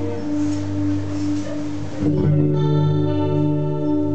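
Solo acoustic guitar playing an instrumental guarania, its notes ringing on, with a fresh chord struck about two seconds in.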